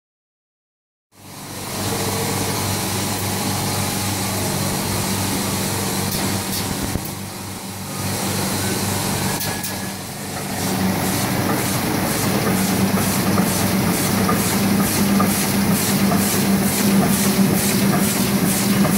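Heidelberg Speedmaster SM 74-2P two-unit perfecting offset press running, starting about a second in with a steady machine hum. From about ten seconds in, a regular clacking of roughly two beats a second rides on the hum.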